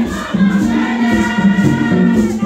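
A group of voices singing together in held, sustained lines: a Haitian Vodou ceremonial song sung by the congregation.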